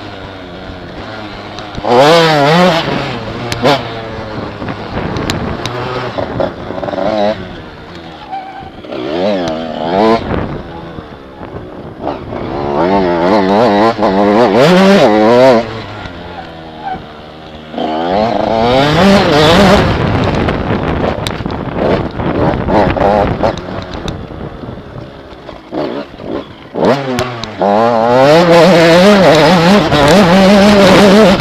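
Mini enduro dirt bike engine revving hard and backing off over and over, its pitch climbing and dropping as the rider accelerates and shifts. It is heard close up from the rider's helmet.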